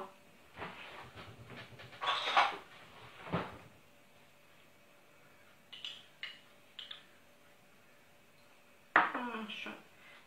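Cutlery and dishes clattering as a tablespoon is fetched, with two louder clatters, then a few short, light clinks of a metal spoon against a small glass cup.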